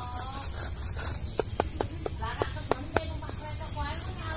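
A few sharp taps as a small plastic insecticide container is dabbed and rubbed against scraped mango bark, over a steady high hiss.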